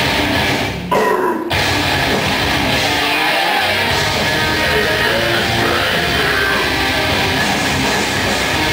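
Metal band playing live: electric guitars, bass and drum kit played loud, with a brief stop just before a second in before the band comes back in.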